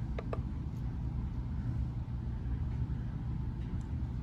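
Two short clicks as a digital kitchen scale's button is pressed, over a steady low background rumble.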